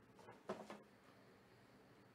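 Near silence, broken about half a second in by one brief rustle of trading-card packs being handled.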